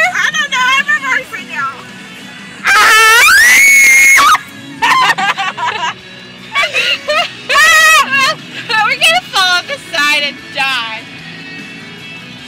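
Voices singing and shrieking in a moving car, with one long, loud, high-pitched shriek about three seconds in and another loud cry around eight seconds, over a low steady car hum.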